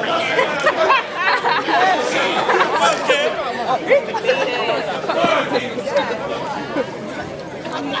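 Crowd of spectators chattering, many voices talking and calling out over one another.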